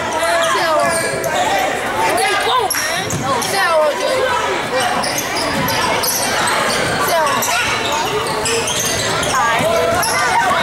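A basketball dribbling on a hardwood gym floor. Overlapping voices of spectators and players call out throughout, echoing in the large gym.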